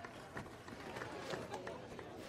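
Quiet casino-floor ambience: faint background voices with a few short, light clicks scattered through it.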